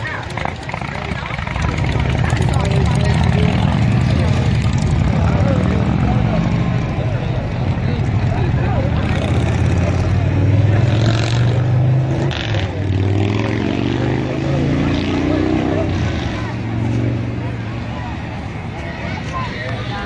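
A motor vehicle's engine running close by, a low rumble whose pitch drifts up and down; it swells about two seconds in and fades near the end, with faint voices underneath.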